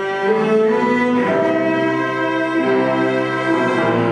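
Cello and grand piano playing a 20th-century cello sonata: the cello bows long held notes that change pitch about once a second, over piano accompaniment.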